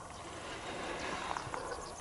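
Quiet outdoor night ambience: faint insect chirping over a low, steady background hiss.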